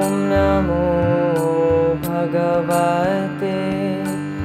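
A woman's voice chanting a Hindu devotional mantra in song, gliding between long held notes, over a steady drone accompaniment with light, regular percussive strikes.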